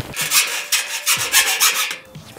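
Metal being rasped on galvanised steel cable tray: quick repeated scraping strokes, about six or seven a second.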